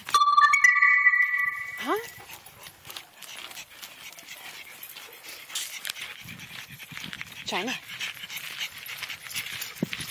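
A dog whining: a loud, high, steady whine that lasts about two seconds and then stops, from an excited Great Dane urged to find something it is hunting.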